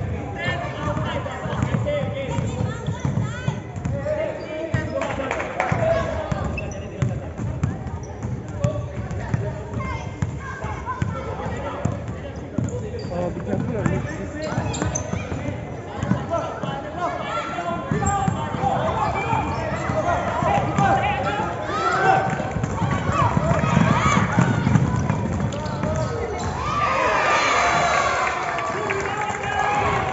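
Basketball dribbled and bouncing on an indoor court during a youth game, with many separate bounces. Indistinct voices of players and spectators run alongside, busier near the end.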